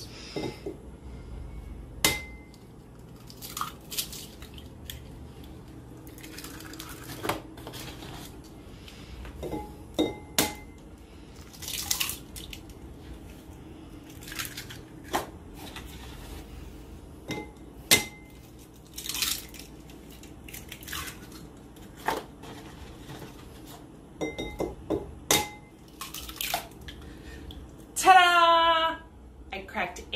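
Eggs being cracked two at a time into a ceramic bowl: a string of short, sharp cracks and clicks of shell, one every second or two.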